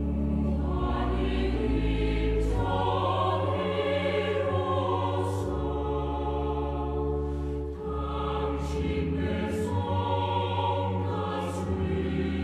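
A hymn sung by a group of voices with organ accompaniment, sustained low organ notes beneath the melody. The singing moves in phrases with short breaks between them.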